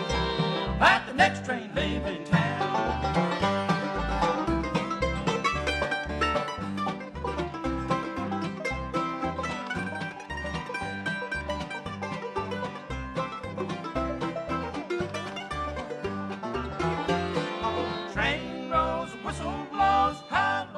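Bluegrass band playing an instrumental break on fiddle, mandolin, five-string banjo, acoustic guitar and upright bass, the bass keeping a steady beat.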